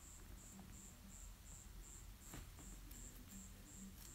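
Near silence, with a faint high-pitched chirp repeating steadily about three times a second and one soft tick a little past the middle.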